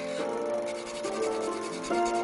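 A pencil scratching quickly back and forth on paper, over background music with sustained notes.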